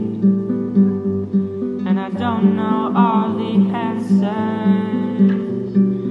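Pop song: acoustic guitar accompaniment with a steady pulse, and a male lead voice that comes in singing about two seconds in.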